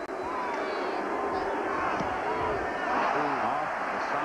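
Stadium crowd noise, a steady din of many voices, with single voices rising out of it now and then.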